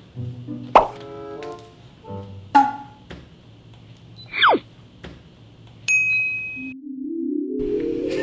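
Cartoonish editing sound effects over light background music: a couple of sharp plop sounds, a falling whistle-like slide about halfway through, and a short bright ding about six seconds in. A brief gap follows, then music swells near the end.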